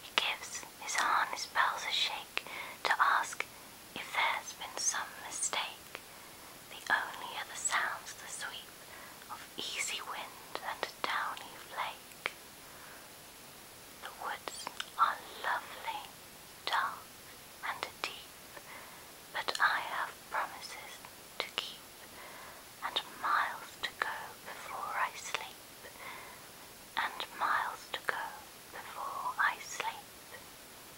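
A person whispering, phrase by phrase with short pauses, including a longer pause about twelve seconds in.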